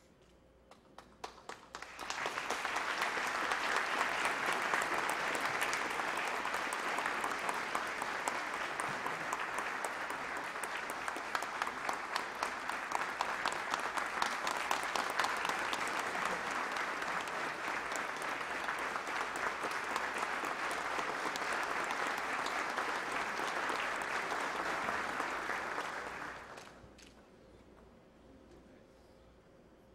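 Audience applauding: a few scattered claps first, then steady, sustained applause that dies away near the end.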